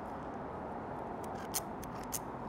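Pistol-grip marinade injector being worked into a raw brisket, giving a few short clicks in the second half over a steady background hiss.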